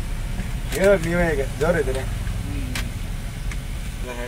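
Truck engine running steadily, heard as a low rumble inside the cab. A man's voice comes in briefly about a second in.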